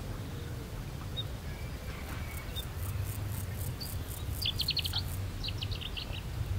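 A bird calling two quick runs of short, rapid notes near the end, over a steady low outdoor rumble. A faint, high, rhythmic ticking comes through in the middle.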